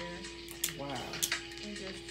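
Snow crab legs being cracked and picked apart by hand: a few sharp clicks of breaking shell over a steady low hum.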